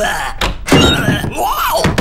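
Cartoon sound effects: a cupboard door banging with heavy thumps, then a loud clattering burst. Near the end comes a short wordless cry from the cartoon character, rising and then falling in pitch.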